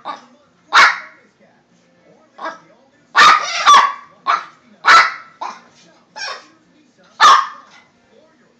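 A small dog barking: a string of short, sharp barks at irregular intervals, about nine in all, some in quick pairs.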